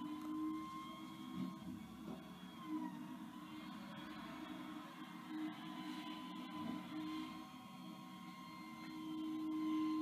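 Faint steady running of a natural-gas rear-loading garbage truck, its engine and hydraulic whine holding a few even tones that dip slightly and come back. A few soft knocks come as trash is thrown into the hopper.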